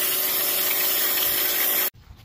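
Pressure washer spraying water onto pond rocks and muck: a steady hiss with a faint hum under it, cutting off suddenly near the end.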